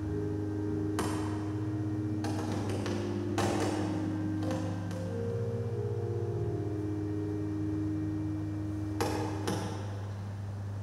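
Soft instrumental music of slowly changing held chords, with a series of sharp metallic clinks from the chalice and ciborium being handled and cleaned on the altar: one about a second in, a cluster between two and five seconds, and two more near the end.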